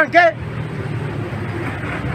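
A man's voice briefly at the start, then steady outdoor background noise with faint voices of the people standing around.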